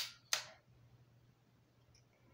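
Two sharp clicks about a third of a second apart as the laser sight on a Taurus G3C pistol is switched on, then faint room tone.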